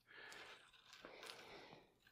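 Faint rustling of a tennis string being handled and threaded through the insert by hand, in two short stretches, otherwise near silence.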